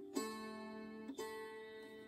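Wing-shaped gusli, tuned diatonically with a drone string, strummed twice about a second apart; each chord rings on and slowly fades.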